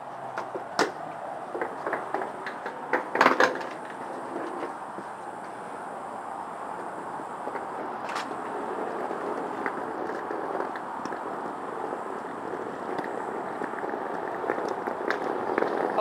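Small hard wheels of a rolling suitcase running over concrete paving, a steady rumble with sharp knocks as they jolt over joints and bumps, a cluster of knocks about three seconds in.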